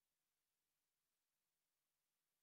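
Near silence: only a faint, steady electronic hiss.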